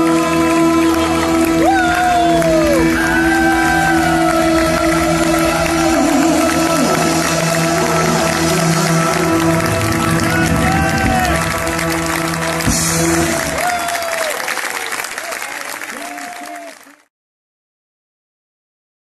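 Live prog rock band holding a long final chord, with arching whoops and shouts from the audience over it. The chord stops about 13 seconds in, and what is left fades and cuts out to silence near the end.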